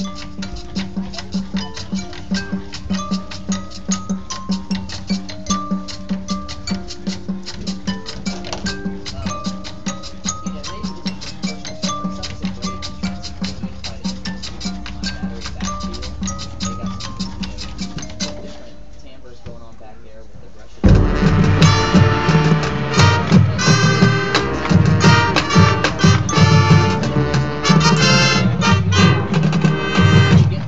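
High school marching band opening its show: a quiet passage of pitched front-ensemble percussion and a rapid, even ticking pulse over a sustained low note, then after a brief lull about two-thirds of the way in, the full band of brass and drums enters loudly and cuts off sharply at the end.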